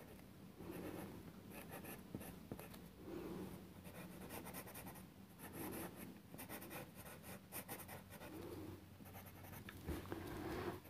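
Faint scratching of a pencil on tracing paper, in many short, quick strokes as dark areas are shaded in.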